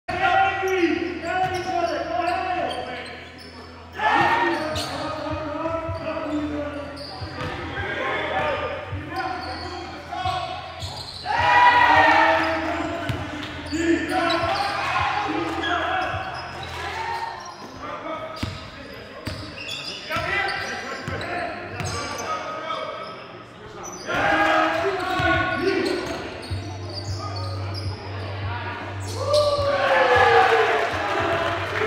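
Basketballs bouncing on a hardwood gym floor, with voices echoing through the large hall.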